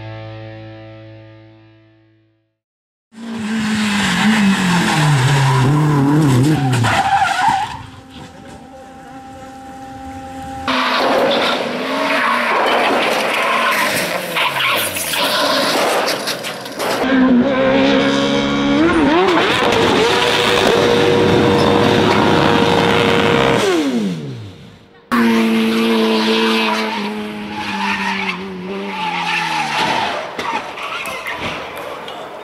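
Intro music fades out. After a short gap, racing car engines rev up and down through gear changes at full throttle, with tyre squeal, across several cut-together clips. In one clip an engine holds a steady high note for a few seconds, then drops away.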